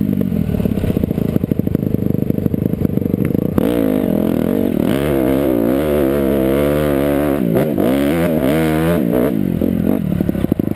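Dirt bike engine under the rider, running choppy at low revs at first, then opening up about three and a half seconds in. It revs up and down under load while climbing a rocky hill, with a couple of brief drops in the revs near the end.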